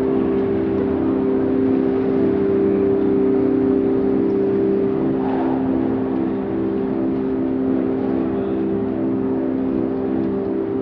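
A loud, steady low mechanical hum made of several even tones, one of them pulsing about three times a second.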